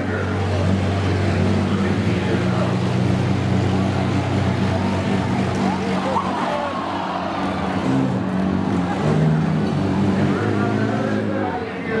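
Engines of several demolition-derby minivans running together, their low drones overlapping and holding fairly steady, with the pitch shifting a little partway through.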